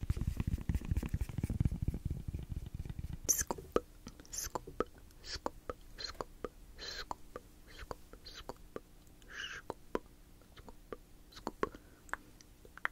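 Silicone spoon rubbed against a foam microphone cover, a dense low scratching for the first couple of seconds, then scattered soft clicks and taps with a few short whispered breaths.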